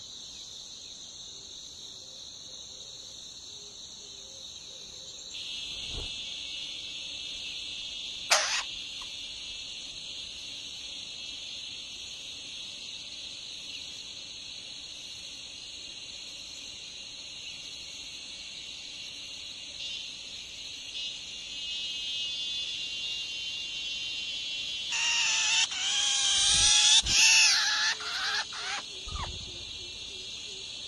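Shrike nestlings begging loudly for about four seconds near the end, a run of wavering squeaky calls, as the parent feeds them at the nest. Under it a steady high insect drone runs throughout, with one sharp click about eight seconds in.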